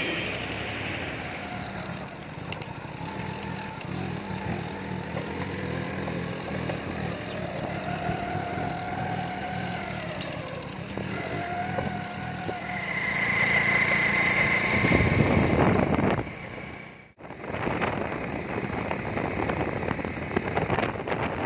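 Small motorcycle engine running as the bike rides along a rough dirt lane, with a slow rise and fall in engine pitch and a steady high tone for a couple of seconds near the middle. Near the end the sound cuts out for a moment and gives way to wind noise on the microphone.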